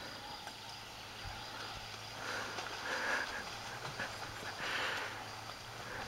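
Mountain bike wheels splashing through shallow floodwater, a faint splashing that swells a couple of times, around two to three seconds in and again near five seconds.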